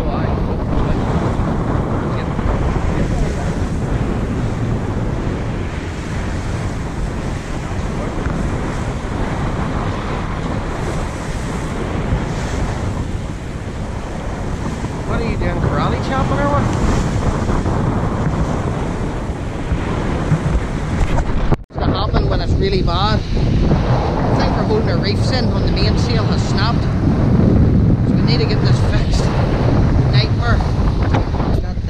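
Steady wind buffeting the microphone and seas rushing along the hull of a sailing yacht under way in a strong wind and lumpy swell. The sound briefly cuts out about two-thirds of the way through, then the same wind and water noise carries on.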